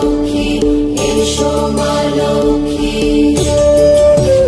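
Bengali devotional song for Lakshmi puja playing, with steady held notes over light percussion.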